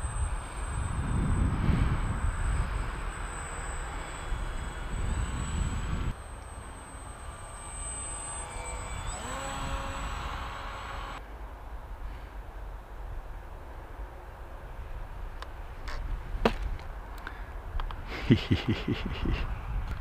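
Brushless electric motor and pusher propeller of a foam RC biplane (a Bix 3 with an added Bixler 1 wing) whining as it flies past, its pitch sweeping as it passes about nine to ten seconds in. Wind rumbles on the microphone.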